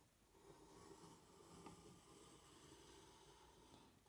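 Near silence: faint handling noise and a small tick from a drawing compass being adjusted by hand.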